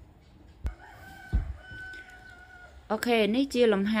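A faint, drawn-out call held on one pitch for about a second and a half in the background, after a click and a low thump. A voice then starts talking near the end.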